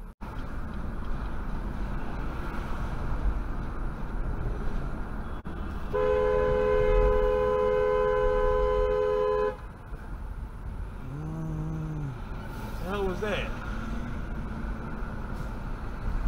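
Car horn held in one long, loud blast of about three and a half seconds, starting about six seconds in, over steady road noise heard from inside a moving car.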